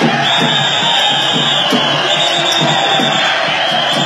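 Loud festival procession sound: drums beating a steady rhythm under a dense crowd.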